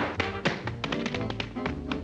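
Rapid tap-dance footwork, shoes striking a hard floor in quick clicking taps, over big-band swing music with brass.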